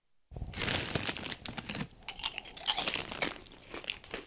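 Irregular crinkling and crunching noises, heard through the answering-machine recording at the start of a caller's message.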